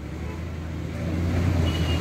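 Low rumble of road traffic, a vehicle engine growing steadily louder as it passes.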